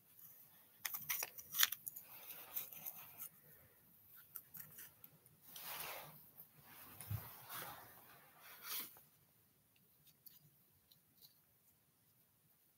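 Faint handling noise as a rock is held and turned against a flashlight: a few sharp clicks at first, then soft rustling swells, dying away near the end.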